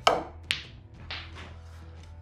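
Snooker cue striking the cue ball with a sharp click, then a second sharp click about half a second later as the cue ball hits an object ball, and a softer knock about a second in. Faint background music runs underneath.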